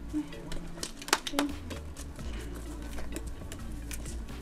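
Brief murmured voices over a low background music bed, with a couple of sharp clicks a little after a second in.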